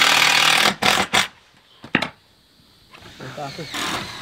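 Work noise on a corrugated steel roof: a burst of noise, then a few sharp knocks and clicks on the metal panels as they are laid and readied for screwing.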